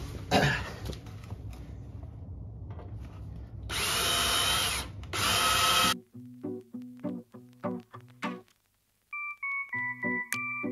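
A cordless drill runs in two bursts about four seconds in, a long one and then a short one, drilling into metal under the vehicle. Just after, the sound cuts to background music of evenly plucked, keyboard-like notes.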